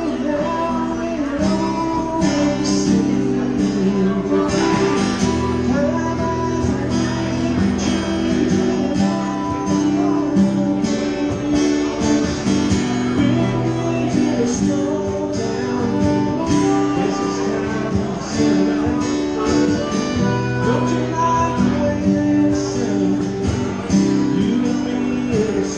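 Two acoustic guitars playing a song together live, strummed chords going steadily throughout.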